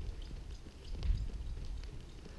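Miniature donkey trotting on a sand arena floor, its hoofbeats muffled by the footing, under a low rumble that swells about a second in.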